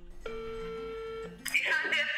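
A mobile phone on speaker giving one steady ringback tone of about a second, then a voice coming on the line near the end as the call is answered.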